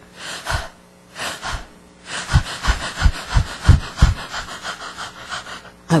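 A person panting like a dog: two long breaths, then quick, rhythmic panting at about three breaths a second from about two seconds in.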